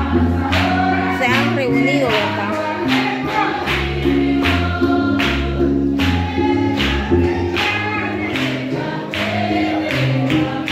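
Church worship music played through loudspeakers: singing over a band with a steady drum beat and bass line.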